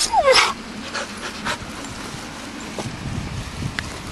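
A dog gives a short yelping whine right at the start, its pitch falling, followed by quieter scuffing sounds.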